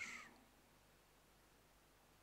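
Near silence: faint room tone after the tail of a spoken word in the first moment.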